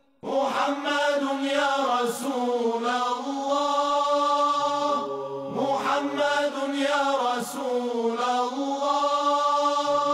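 Devotional vocal chanting: a voice singing long, held, wavering notes without a speech rhythm, with a low steady drone that comes in briefly around halfway through and again near the end.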